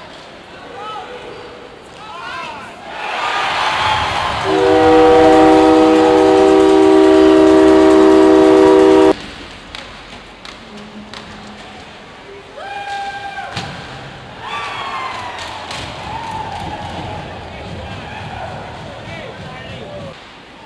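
Arena crowd cheering as a goal is scored, then an ice hockey goal horn sounds one long, steady multi-tone blast of about four and a half seconds that cuts off suddenly. The cheering carries on more quietly after the horn.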